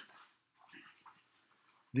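A pause in a man's speech: the end of a word, then near quiet with a faint short sound about half a second in, and his voice starting again near the end.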